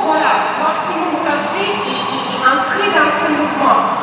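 Speech only: a woman talking steadily, with no other sound standing out.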